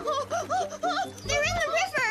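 A high, sing-song cartoon voice over light children's music.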